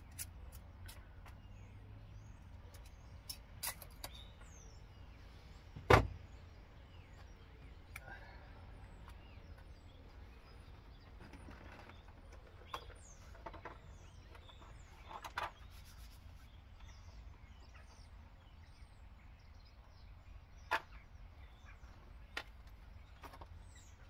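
Scattered light clicks and knocks of hand tools being handled while marking out a plastic trim panel, with one sharp, much louder knock about six seconds in. A low steady outdoor rumble and faint bird chirps lie underneath.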